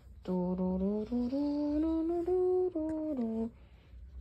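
A voice humming a short tune of held notes that step up and down in pitch, for about three seconds.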